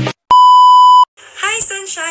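A single loud, steady electronic beep about three-quarters of a second long, one unwavering tone, after which a woman starts speaking.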